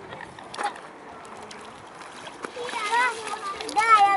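A small child wading through shallow river water, feet splashing lightly, with a child's high-pitched voice calling out twice near the end.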